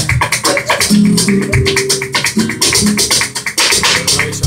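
Live flamenco music: a Spanish guitar playing low sustained notes under a rapid, dense run of sharp percussive hits that include hand claps (palmas).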